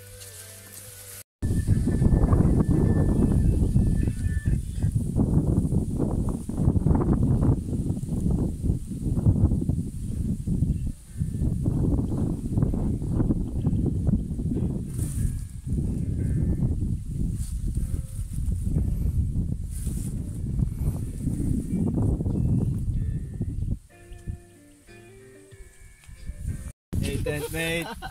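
Wind buffeting the camera microphone: a loud, uneven low rumble that rises and falls, starting suddenly about a second in and easing off near the end.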